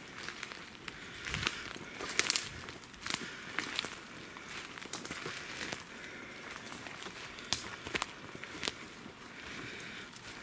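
Footsteps crunching through dry leaf litter and pine needles, with irregular crackles and twig snaps. The loudest cluster comes about two seconds in, with sharper snaps around seven to nine seconds.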